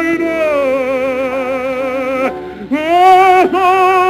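Operatic singing: a voice holding long notes with wide vibrato, a brief break for breath a little past halfway, then a new note swelling up.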